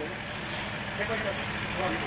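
A steady low hum with a hiss over it, and faint voices in the background.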